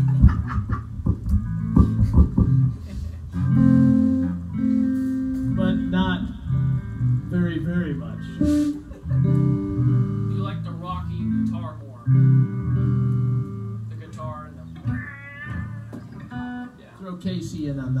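Amplified electric guitar played loosely between songs: scattered single notes and held low notes rather than a steady groove, with a few sharp hits in the first couple of seconds.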